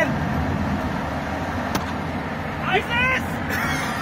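Steady low road and engine noise inside a car's cabin, with a faint click near the middle.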